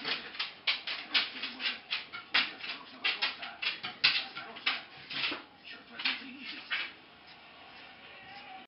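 Hand stripping knife pulling long hair from a Silky terrier's tail, the hair gripped between blade and thumb and torn out: a quick series of short tearing strokes, about three or four a second, that stops about a second before the end.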